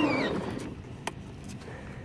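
A voice trails off at the start, then quiet outdoor background with a single sharp click about a second in; no motor is heard running.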